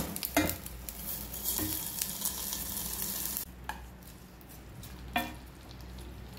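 Hot-oil tempering of curry leaves, dried red chilli and seeds sizzling as it is tipped from a kadai into a pot of cooked curry, with scraping clicks. The sizzle dies away about three and a half seconds in, followed by a couple of short knocks of the spatula in the pot.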